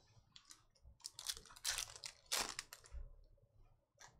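Foil trading-card pack wrapper crinkling and tearing as the pack is ripped open, a few short crackly bursts about a second to two and a half seconds in.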